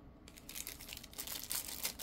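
Thin clear plastic sleeve crinkling as a folding knife wrapped in it is lifted from its box and handled: a run of faint, quick crackles starting a moment in.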